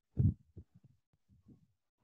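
A dull thump about a quarter second in, followed by several fainter short knocks.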